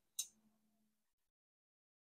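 Near silence, broken by one short click just after the start.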